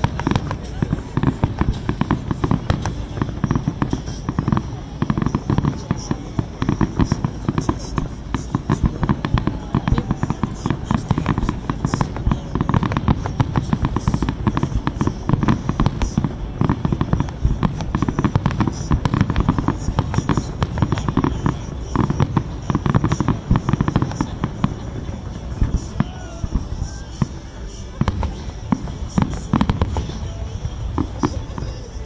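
Aerial fireworks display: a dense, unbroken run of shell bursts and crackling, many sharp bangs packed close together.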